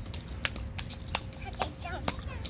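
A child's shoes slapping and splashing in a shallow rainwater puddle on asphalt: about five separate steps, roughly two or three a second.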